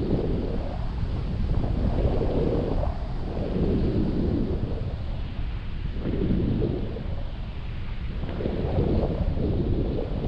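Wind buffeting the microphone of a camera on a selfie stick during a tandem paraglider flight: a deep, rumbling rush that swells and eases every second or two.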